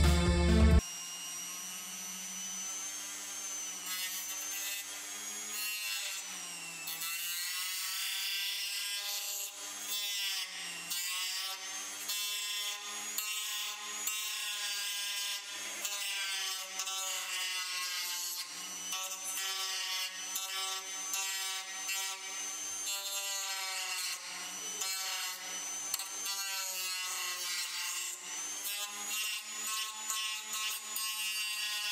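A flexible-shaft rotary tool grinding into the plastic of a car bumper. Its motor whine keeps dipping in pitch and recovering as the bit bites and eases off.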